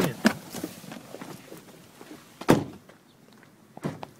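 A car door shut with a loud thump about two and a half seconds in, between rustling and handling noise, with a second, sharper knock near the end as the person walks off.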